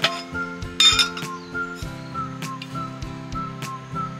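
Background music with a steady beat, and a sharp metallic clink about a second in as stainless steel camp cookware is set on a metal camping gas stove.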